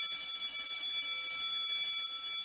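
Electronic chime sound effect: a steady, bright ringing tone of several high pitches sounding together, with no rhythm.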